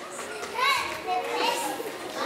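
Several children's voices talking and calling out over one another, the words not clear.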